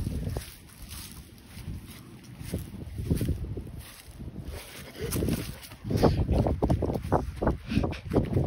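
Wind buffeting a phone microphone, with handling noise as the phone is swung about: an uneven low rumble that gets louder and choppier near the end.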